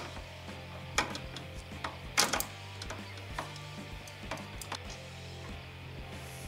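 Socket ratchet on a long extension clicking in scattered single strokes and short runs as a bolt is worked loose, over background music with a steady low bass.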